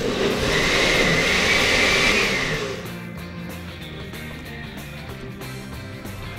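Countertop blender motor running, blending fresh fruit and rum with no ice, a steady whine over a rough churning noise; it shuts off after about two and a half seconds.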